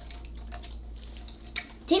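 Faint sipping of juice through a drinking straw, with a few soft clicks.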